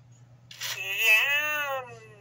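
A 1999 Autumn Furby's electronic voice, set off by a press on its belly, giving one long high-pitched call through its small speaker that rises and then falls in pitch.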